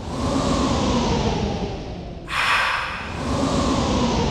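Suspense sound effect: a sudden hissy swell that fades slowly into a long whoosh, repeating about every three and a half seconds, with a new swell about two seconds in.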